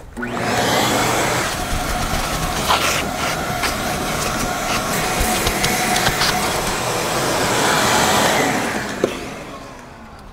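Vacuum cleaner running steadily over fabric car seats, fading in at the start and out near the end, with a few clicks along the way.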